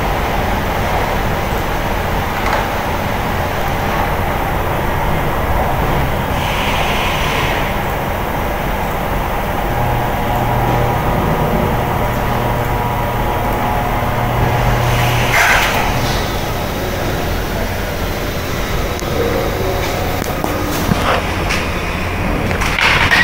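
Steady background noise of machinery on a factory floor, a constant hum and rush, with a low tone that holds from about ten to fourteen seconds in and a short hiss at about fifteen seconds.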